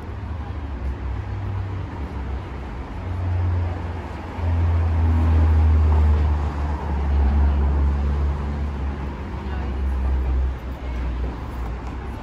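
Street traffic at an intersection: a vehicle's engine gives a low rumble as it passes close by, swelling about four seconds in and dropping away near ten seconds, over the general hiss of passing cars.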